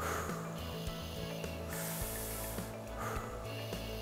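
Slow breaths taken through a jet nebulizer mouthpiece: a soft hissing inhalation of the medicated mist about halfway through, with quieter exhales at the start and near the end, over faint background music.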